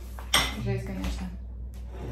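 A single sharp clack of a plastic food container being handled and set on a hard kitchen tabletop, about a third of a second in, followed by faint lighter rattles.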